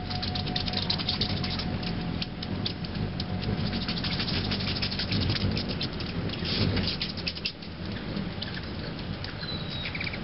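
Hummingbird hovering at a feeder: a low hum of its wings under a dense run of short, rapid ticks and chips, with a brief high note near the end.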